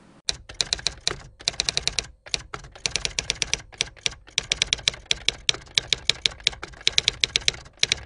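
Typing on keys: fast runs of sharp keystroke clicks, about ten a second, broken by short pauses.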